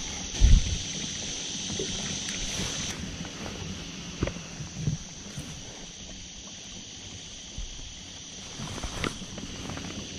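Quiet ambience on a small anchored fishing boat: a steady high hiss that fades after about three seconds over a low hum, with a soft thump about half a second in and a few light knocks as the hook is baited by hand.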